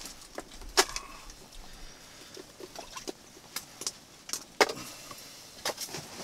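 Irregular sharp clicks and knocks from an ice-fishing rod and reel being worked while playing a large lake trout, with two louder knocks about a second in and past the middle.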